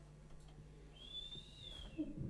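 A short, faint, high-pitched whistling tone about a second in, rising slightly and then falling away within under a second, over a low steady hum.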